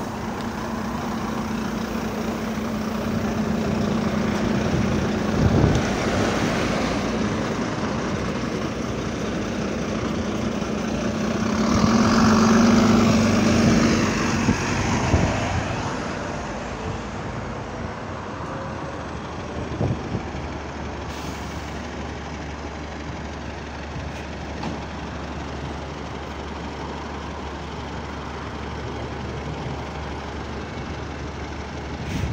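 Road traffic at a bus stop: lorries, cars and double-decker buses passing, the loudest pass about twelve seconds in, then the steady low hum of an idling bus.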